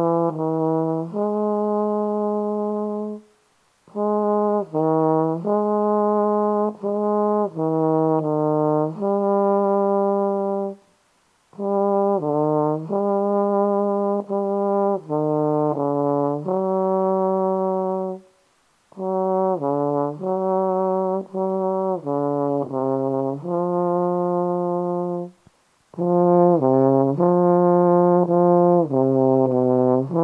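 A single low brass instrument in the trombone range plays an unaccompanied melodic study, one note at a time, in five phrases separated by short breath pauses.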